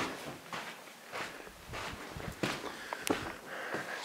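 Footsteps over loose rocks: irregular scuffs and clicks of stones shifting underfoot.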